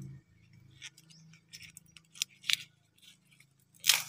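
Dry bamboo leaves and twigs crackling and snapping as a hand pushes through the base of a thorny bamboo clump: a few short, sharp, irregular clicks, the loudest about two and a half seconds in and just before the end.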